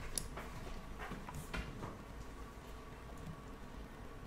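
A few faint, sharp clicks, bunched in the first couple of seconds, over a low steady hum, like a computer mouse being clicked during an online chess game.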